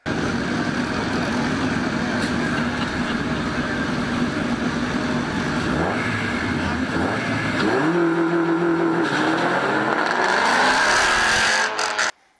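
Car engines at a drag-strip start line, among them a Honda Prelude's H22 four-cylinder, running with blips of throttle. About eight seconds in the revs jump and are held. Over the last few seconds the sound grows louder with rising engine notes as the cars launch.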